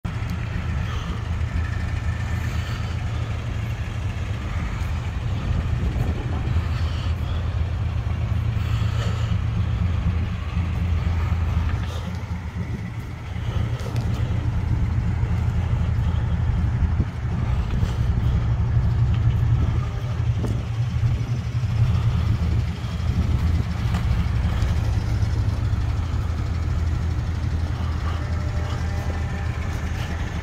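A 1988 Chevrolet Caprice's carbureted engine idling with a steady low rumble.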